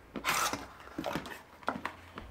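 Cardboard boxes being handled: a short scrape of cardboard a quarter-second in, then a few light knocks and taps as a box flap is pulled open.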